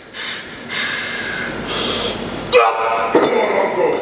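A strongman straining and breathing hard in forceful, hissing exhalations as he hauls a 180 kg wooden log up to his lap, then a loud grunt or shout about two and a half seconds in.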